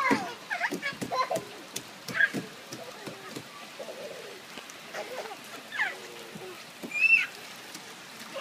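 Toddler's wordless babbling and high squeals, with light slaps and splashes as his hands hit the rainwater on a plastic slide.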